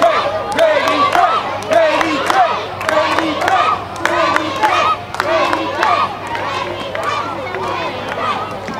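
Many players shouting and calling out at once during a flag football game, with overlapping excited voices and scattered sharp clicks. The shouting is loudest in the first six seconds and eases a little towards the end.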